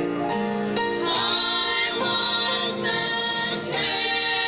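A small gospel vocal group of women and a man singing together into handheld microphones, holding notes in harmony, with a brief break between phrases near the end.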